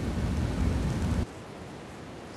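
Steady background hiss with a low rumble that cuts off abruptly a little over a second in, leaving a fainter hiss.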